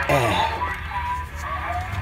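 Zenith 7S529 tube radio on the shortwave band with no external antenna, playing voice-like sounds from a station over a steady low hum. A pitched sound falls in pitch at the start.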